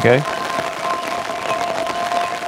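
A sustained chord on a granular synth built from a rain field recording: two held tones over a dense, fine grainy hiss. The spray setting is turned up, so the grains are drawn at random from outside the selected section of the sample, giving a shifting, random texture.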